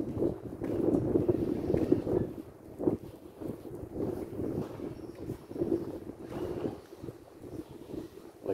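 Wind buffeting a handheld camera's microphone in uneven gusts, strongest in the first two seconds.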